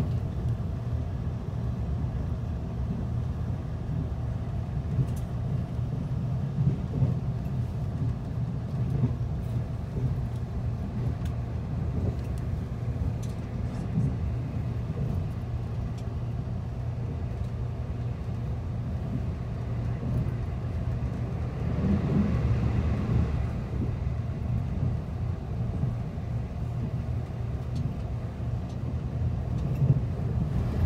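Steady low rumble of a TEMU2000 Puyuma tilting electric train running at speed, heard from inside the passenger car, with a few faint clicks. The noise swells for about two seconds a little past the middle.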